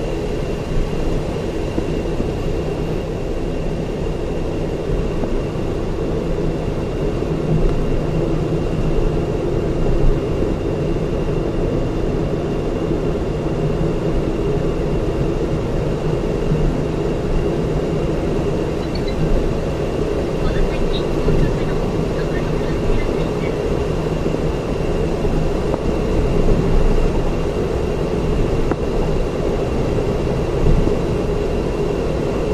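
Steady road and engine noise of a car cruising on an elevated expressway, heard from inside the cabin as a continuous low rumble of tyres and engine, with a faint steady high whine over it.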